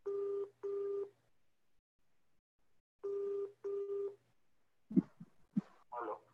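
Telephone ringback tone from a mobile phone's speaker on an outgoing call waiting to be answered: two double rings, each two short steady beeps, about three seconds apart. A few faint knocks follow near the end.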